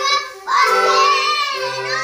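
Young girls singing loudly together, with a short break just before half a second in, over steady held chords from a toy accordion.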